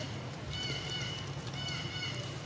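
Faint, short, high-pitched squeaks from a baby macaque, repeated several times about half a second apart.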